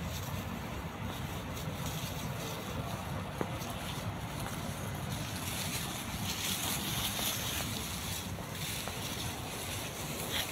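Wind noise on the microphone together with the rustle of tall grass being pushed through, a steady rushing hiss that grows brighter and louder past the middle.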